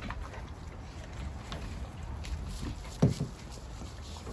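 A large dog drinking from a running garden hose, over a steady low rumble. One short loud sound about three seconds in.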